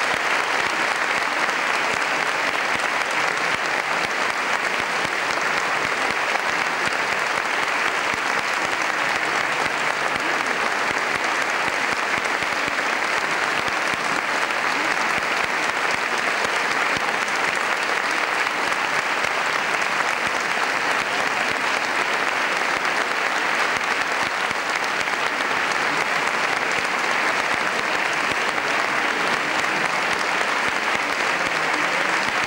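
A concert audience applauding steadily.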